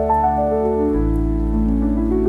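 Slow solo piano playing a descending run of single notes over held bass, with a deep low note coming in about a second in. A faint rain sound is mixed in underneath.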